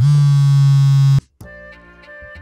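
Mobile phone's vibrate alert buzzing loudly for about a second, then cutting off sharply. Soft background music with sustained keyboard notes follows.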